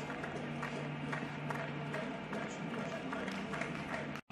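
Low, steady ballpark background of crowd noise and faint music under the broadcast, with a steady low hum that fades out about halfway through.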